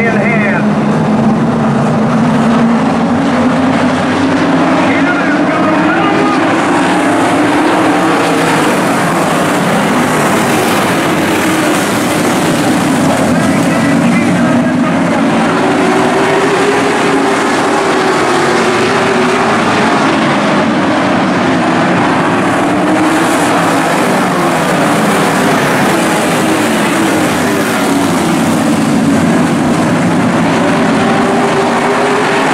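A field of late model stock car V8 engines running together as the cars circle the oval, the engine pitch rising and falling over several seconds as cars accelerate and pass by.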